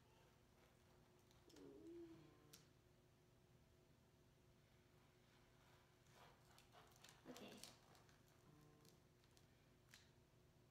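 Near silence: room tone with a faint steady hum, a few soft clicks of paper being handled, and two brief faint voice sounds, one about two seconds in and one past seven seconds.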